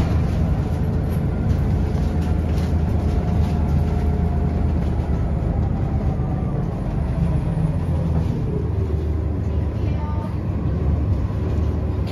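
City transit bus running, heard from inside the cabin: a steady low engine and drivetrain hum with road noise. A faint whine slides in pitch as the bus changes speed in the second half.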